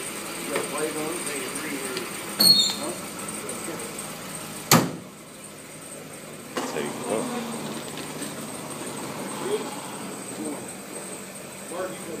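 The carbon-fibre hood of a Corvette ZR1 being shut: one sharp slam just before five seconds in, with a shorter knock a couple of seconds earlier, over people talking in the background.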